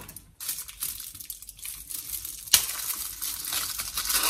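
Aluminium foil wrapper crinkling and rustling as a chocolate bar is broken into pieces, with one sharp crack of the chocolate snapping about two and a half seconds in.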